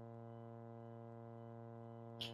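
Faint, steady electrical hum with a buzzy stack of overtones, carried by an open microphone line on a web conference call.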